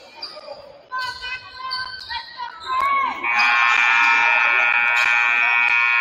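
Gym scoreboard buzzer sounding one loud, steady blast about three seconds in as the game clock runs out, marking the end of the period. It lasts about three and a half seconds.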